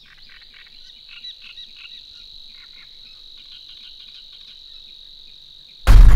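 A faint, steady high insect trill with scattered bird chirps over it. Just before the end a metalcore band comes in suddenly at full volume.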